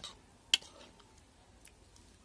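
Metal spoon clicking against a white bowl while mixing chopped oranges into a wet coriander paste: one sharp click about half a second in, with a few faint ticks.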